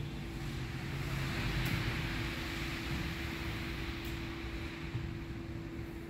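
Steady background noise with a constant low hum, a wash of hiss that swells about two seconds in and slowly eases off.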